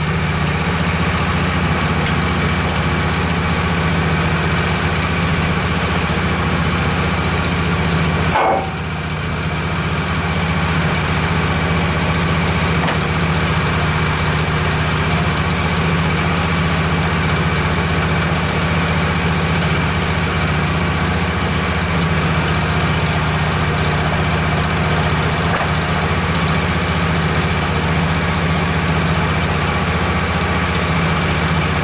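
Wood-Mizer LT15 portable sawmill's engine idling steadily between cuts. The loudness dips once, briefly, about eight and a half seconds in.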